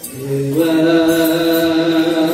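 A group of voices chanting an Ethiopian Orthodox liturgical hymn in unison on long, held notes. The chant breaks off briefly at the start, comes back, and steps up in pitch about half a second in.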